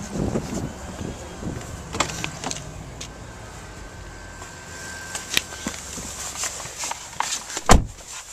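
A car's driver door being opened and someone climbing into the seat: a few sharp clicks of the handle and latch, rustling and shuffling, and a sharp knock near the end.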